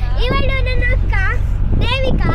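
Steady low engine and road rumble inside a moving vehicle's cabin, with girls' high voices calling out and laughing in three short stretches.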